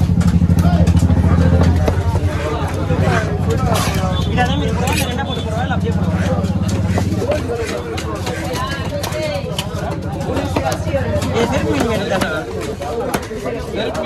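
A steady engine hum runs close by, loudest in the first two seconds and fading out about seven and a half seconds in, under a busy background of voices. Short sharp knocks of a cleaver chopping fish on a wooden block come through throughout.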